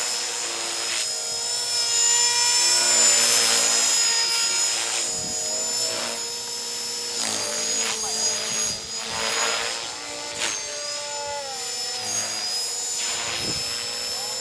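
Radio-controlled model helicopter flying, its motor and rotor giving a steady whine whose pitch shifts slightly a few times as it manoeuvres.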